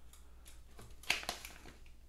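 Handling noise from a steel tape measure being laid across a paper target: a few faint clicks and rustles, with one sharper click about a second in.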